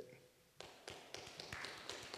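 Faint, scattered applause from an audience: a patter of small claps starting about half a second in, after a short quiet.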